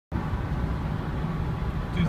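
Inside the cabin of a 2003 Chevrolet Suburban cruising at about 60 mph: steady engine drone and road noise with a low hum. The 4L60E transmission is held in third gear.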